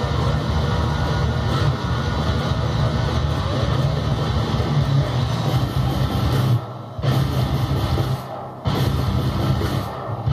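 Electric guitar in drop D tuning playing a heavy low riff on the bottom strings, with two short breaks a little before and after the eight-second mark.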